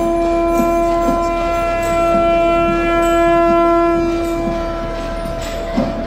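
Conch shell (shankhu) blown in one long, steady note that fades out near the end.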